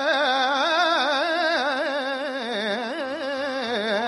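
Carnatic classical music in raga vakulabharanam: one melodic line held and shaken in fast oscillating gamakas, several wavers a second.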